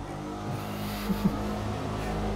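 Small engine of an ATV running steadily in the background, a constant droning hum with a faint light noise over it.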